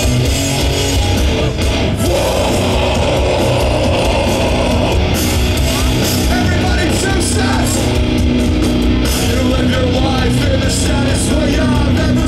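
Live heavy rock band playing loud, recorded from the crowd: distorted electric guitars, bass and drums, with the singer's voice in the later seconds.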